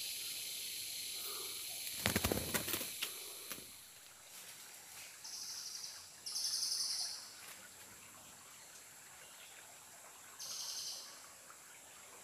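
Brief rustling and knocking, then three steady, high whistled calls about a second long each, two close together a little past halfway and one near the end: a cililin calling in the forest.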